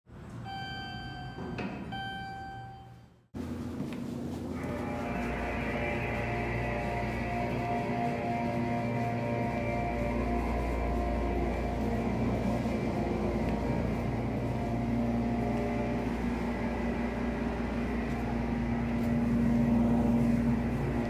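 A short intro jingle of a few clear tones, then a steady hum over a low rumble. The hum grows stronger in the last few seconds.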